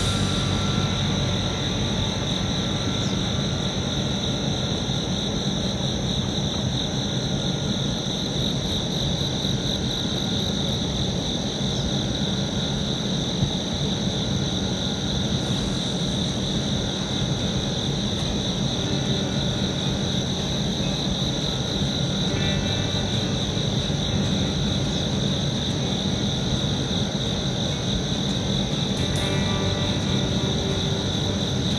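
A steady chorus of insects holding one high pitch throughout, over a low, constant rumble.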